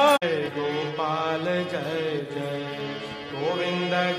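Devotional kirtan chanting: voices singing a melodic chant over a steady drone. The sound cuts out for an instant just after the start, then carries on a little quieter.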